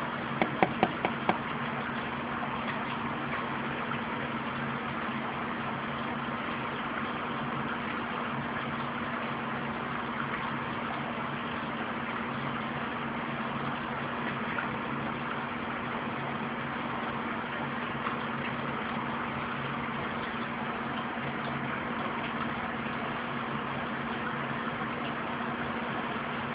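Steady electric hum of an aquarium pump motor under a faint watery hiss, with a quick run of four or five light taps in the first second and a half.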